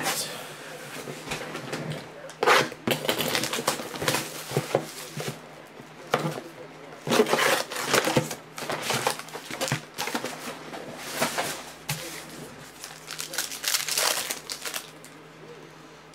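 Foil trading-card packs of 2015 Panini Certified football crinkling and rustling as they are handled and pulled from their cardboard box, then torn open, in irregular bursts.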